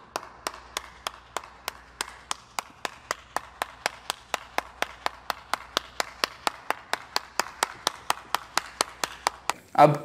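One person clapping slowly and steadily, about three claps a second, with no pause.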